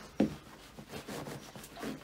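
Rubbing and rustling of clothing against a motorcycle seat and its gel seat pad as a rider shifts his weight on it, with one short sharp sound just after the start.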